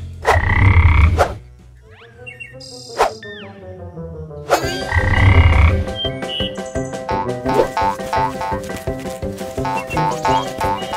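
Frog croak sound effect, twice: each call lasts about a second, and the second comes about four and a half seconds after the first. Faint whistling glides fall between them, and music with repeating notes follows the second croak.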